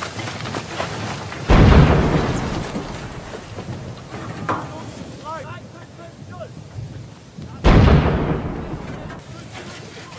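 Two shots from a German 88 mm artillery gun, about six seconds apart. Each is a sudden boom that rumbles away over about two seconds.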